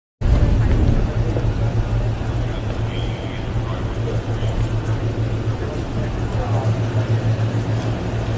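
Steady low rumble of an idling SUV, with faint scattered voices of people around it.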